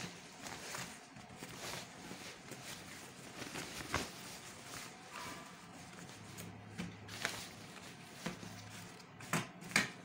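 Faint rustling of printed fabric being unfolded and smoothed out by hand on a wooden table, with a few light knocks, the sharpest two near the end.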